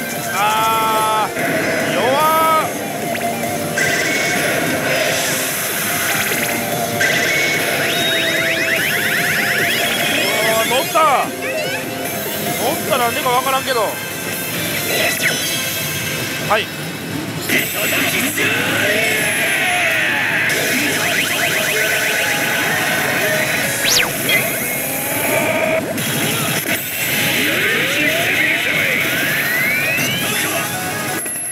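Oshi! Banchou 3 pachislot machine playing its game music and sound effects as the reels spin, with sliding electronic tones and short bursts of voice mixed in.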